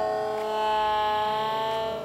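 A long, steady, siren-like tone whose pitch drifts only slightly. It cuts off abruptly at the end.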